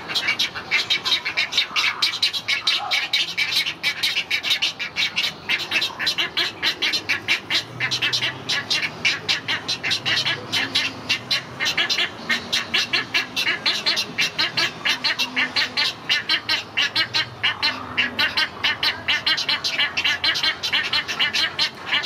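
Great egret chicks begging for food from the parent at the nest: a fast, unbroken run of ticking calls that keeps up steadily throughout.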